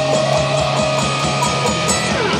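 Electric guitar playing a lead solo line with held, sustained notes, over a steady beat.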